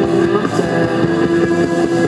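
Live rock band playing: electric guitar and bass hold a loud, droning distorted chord over drums.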